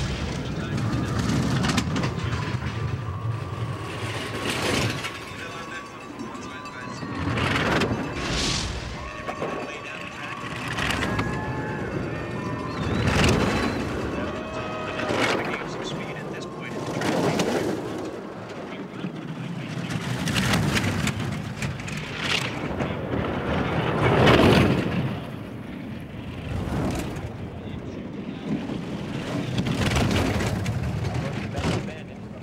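A four-man bobsled running down an ice track, its runners rumbling and hissing in swells that rise and fall every few seconds as the sled passes one trackside microphone after another.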